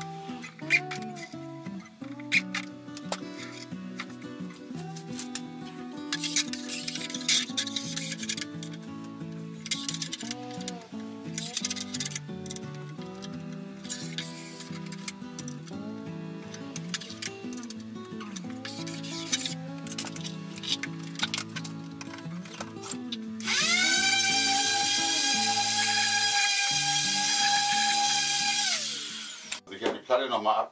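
Background music throughout. Near the end an electric drill runs at steady speed for about five seconds with a loud whine, spinning up and winding down.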